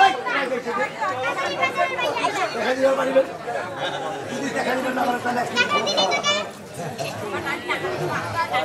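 Several voices talking over one another, speech and chatter with no music.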